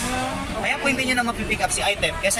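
Handheld electric massager running against a leg with a steady low motor hum, under people talking.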